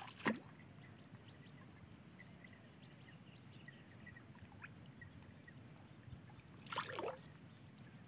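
Hands sloshing and splashing in shallow muddy water: a short splash just after the start and a longer one about seven seconds in, faint in between.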